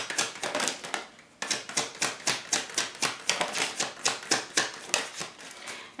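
A deck of tarot cards being shuffled and flicked by hand, a fast run of crisp card clicks that stops briefly about a second in and then picks up again.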